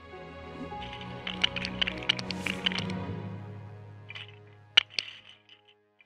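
Outro music with held notes, fading out over the last few seconds, with a scatter of sharp clicks and two loud clicks in quick succession near the end.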